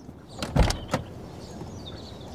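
An SUV's door being opened: a couple of latch clicks around a dull thud about half a second in.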